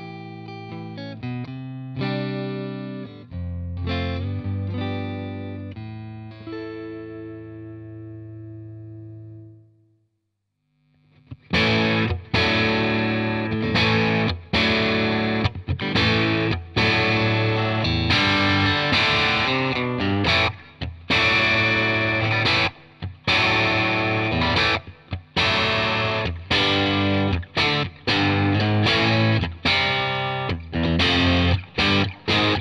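Squier Classic Vibe '60s Stratocaster electric guitar with vintage-style single-coil pickups, played through a Fender Bassbreaker 30R amp with reverb. Clean picked notes and chords ring out and fade to a second of silence; then from about 11 seconds in comes a distorted riff, played in short phrases with frequent sharp stops.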